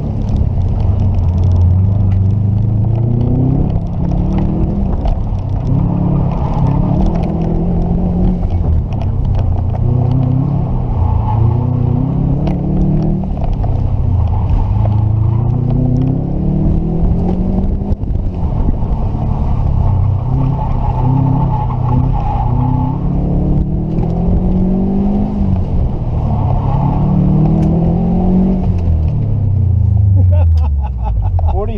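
Subaru WRX STI's turbocharged 2.5-litre flat-four heard from inside the cabin, driven hard: the engine revs climb and fall again and again as the driver accelerates, lifts and shifts, then the pitch falls away near the end.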